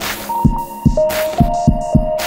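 Electronic music: an uneven run of deep kick-drum thumps, about five in two seconds, under held synth tones that step from one pitch to another, with short hissy percussion hits.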